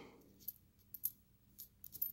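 A few faint, short clinks of copper Lincoln cents knocking together as fingers slide them apart on a cloth towel, about four in two seconds.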